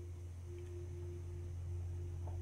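A steady low hum with a faint higher tone above it, and a faint gulp about a third of the way in as a man drinks juice from a glass.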